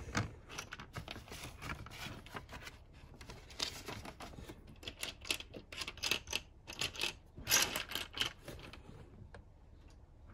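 LEGO plastic bricks clicking and rattling as they are handled: pressed onto a plate, then rummaged through in a pile of loose bricks. The clicks come in short runs, busiest and loudest from about halfway to near the end.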